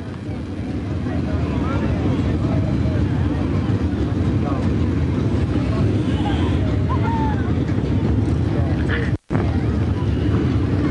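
Loud, steady low rumble of engines running at the racetrack, building over the first second or two, with faint voices of people around it; the sound cuts out for an instant near the end.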